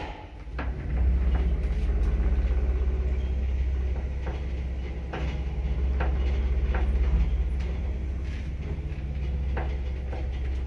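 1977 ZREMB passenger lift car travelling in its shaft: a steady low motor hum and rumble that comes up about a second in, with sharp clicks every second or so.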